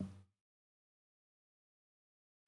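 Near silence: the tail of a man's spoken word dies away at the very start, then dead silence.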